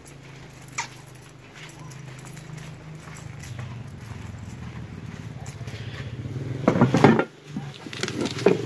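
A steady low hum that grows slowly louder, then a short loud burst of crinkling near the end as a bubble-wrapped part is handled.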